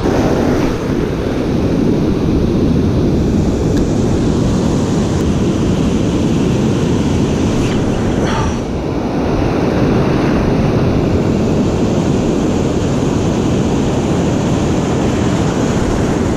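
Wind buffeting the microphone over breaking ocean surf, a loud, steady rushing noise.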